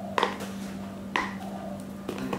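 Meal-prep food containers, a glass jar among them, set down on a hard kitchen countertop: two sharp knocks about a second apart, over a steady low hum.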